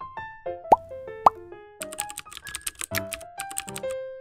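Light background music with two quick rising cartoon "plop" pops about a second in, then a fast run of keyboard-typing clicks from about two seconds in, as a sound effect.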